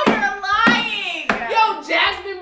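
Two women laughing hard, with three sharp hand claps about two-thirds of a second apart.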